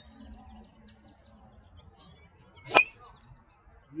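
A single sharp crack of a 9-degree CorteX driver's head striking a golf ball off the tee, about three-quarters of the way in, with a brief ring after it.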